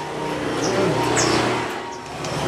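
A motor vehicle going past, its sound swelling through the middle and fading away near the end.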